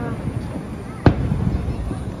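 Aerial fireworks shells bursting: one sharp boom about a second in, over a steady low rumble of further reports.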